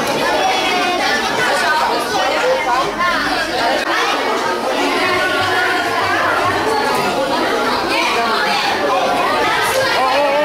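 Many children talking and calling out at once: a steady chatter of overlapping voices with no pause.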